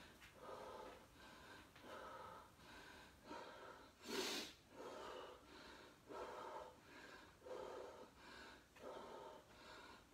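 Faint, quick, regular breathing of a man exerting himself in a floor exercise, with one louder, sharp exhale about four seconds in.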